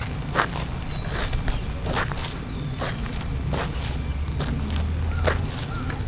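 Footsteps on gritty, sandy ground, irregular and light, over a steady low wind rumble on the microphone.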